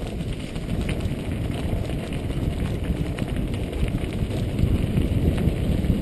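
Mountain bike riding a dirt track heard on a bike-borne camera: steady wind rumble on the microphone and tyre noise, with scattered small clicks and rattles from the bike over the rough ground.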